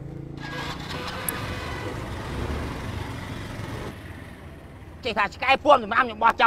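Small motor scooter engine running, a steady rushing noise that fades away after about four seconds.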